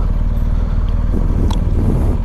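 Motorcycle engine running steadily as the bike rides along.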